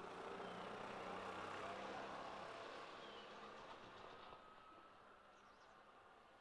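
Faint street ambience with a motor vehicle going past, its sound swelling over the first couple of seconds and fading away by about four and a half seconds in.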